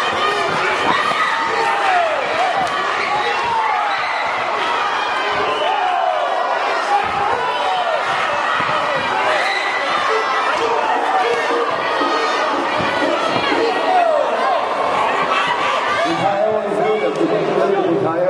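Spectators shouting and cheering at a Muay Thai bout, many voices overlapping and echoing in a large sports hall, with a few thuds of strikes landing.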